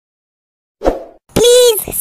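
Silence, then a short pop sound effect a little under a second in. From about halfway through comes a high-pitched cartoon-style voice, the start of a spoken "Subscribe".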